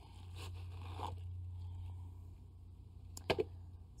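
Faint scraping and rustling of a plant's root ball being handled against its black plastic nursery pot after being pulled free, with a couple of sharp clicks about three seconds in.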